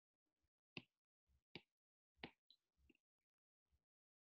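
Near silence broken by several faint taps of a stylus on a tablet screen as lines are drawn.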